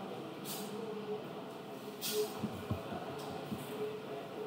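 Faint room noise with a steady low hum, two brief soft hissing rustles and a few soft low knocks.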